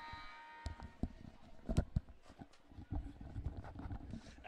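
Gymnasium background noise during a timeout: scattered thumps and knocks over a low rumble, the loudest knock a little under two seconds in. A steady tone fades out in the first second.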